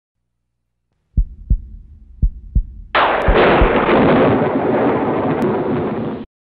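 Intro sound effect: two pairs of deep heartbeat-like thumps, then a sudden loud thunder-like crash about three seconds in that rumbles on for about three seconds.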